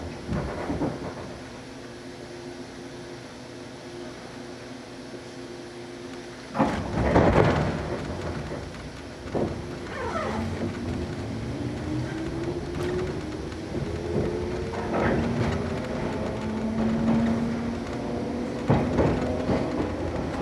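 Shinano Railway 115 series electric train heard from inside the car as it pulls away: a steady low hum, then a louder rumble about a third of the way in. The traction motors' whine then rises steadily in pitch as the train accelerates, with a few clunks along the way.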